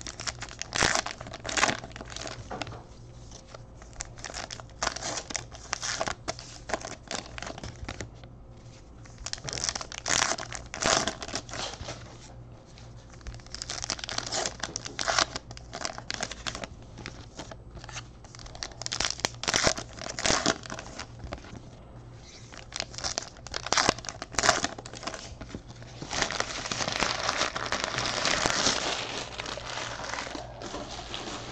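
Plastic trading card pack wrappers being torn open and crumpled by hand, in irregular crinkling bursts, with a longer, denser stretch of crinkling near the end.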